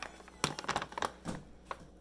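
Crinkling and crackling of a kraft paper bag of dried calendula flowers being torn open and handled, heard as a quick string of sharp crackles and clicks.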